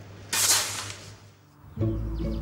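A short hissing burst about a third of a second in, fading within a second. Background music with sustained low notes starts near the end.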